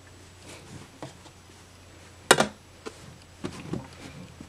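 Folded cotton t-shirts being handled and pressed into a row in a dresser drawer, with a sharp double knock a little over two seconds in and a few lighter knocks and taps toward the end.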